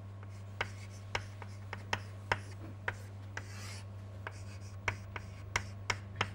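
Chalk writing on a chalkboard: about a dozen irregular sharp taps and short scrapes as symbols are written, with one longer scratch a little past halfway. A steady low hum runs underneath.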